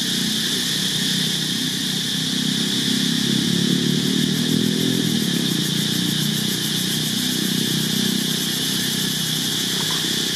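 A small engine, like a motorcycle's, running steadily and swelling slightly a few seconds in, over a constant high-pitched drone.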